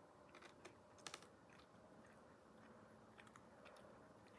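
Faint chewing of pepperoni pizza with the mouth closed: scattered soft mouth clicks, with a short cluster of sharper clicks about a second in.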